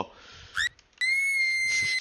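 Jump-scare sound effect from a screamer video: a short rising squeak, then, about a second in, a sudden shrill high-pitched tone that holds steady at one pitch.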